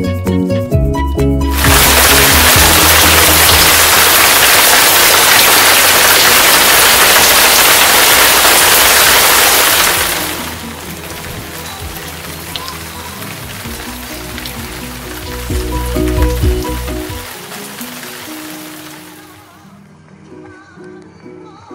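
Music cuts off about a second and a half in, giving way to a loud, steady rush of heavy rain. About ten seconds in the rain drops to a softer hiss, with background music under it that fades near the end.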